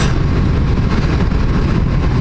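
Motorcycle engine running steadily at cruising speed on the road, with the rush of wind over the helmet-mounted microphone.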